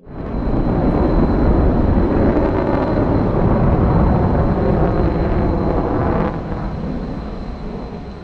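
Jet aircraft engine noise: a dense low rumble that swells in at the start, holds steady and fades over the last couple of seconds, with a faint thin high whine running through it.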